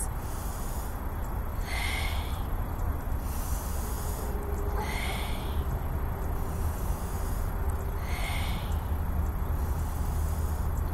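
A woman breathing deeply in through the nose and out, as four noisy breaths a few seconds apart, over a steady low rumble.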